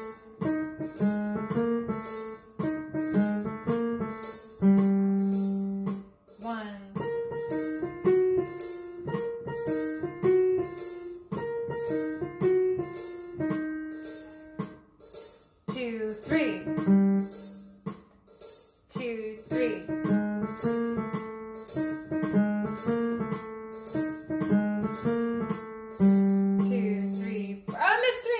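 Digital keyboard playing a short bluesy melody in a piano voice, the phrase repeated over a steady ticking beat. It is a timing exercise: the same melody and rhythm shifted to start on beat two.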